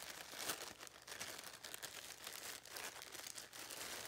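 Clear plastic bag crinkling in irregular crackles as a tripod wrapped inside it is handled and the bag is worked open.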